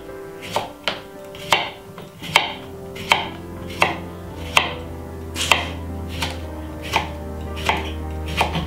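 Kitchen knife slicing a cucumber into rounds on a wooden chopping board: a sharp knock of the blade on the board about every three-quarters of a second, around ten cuts.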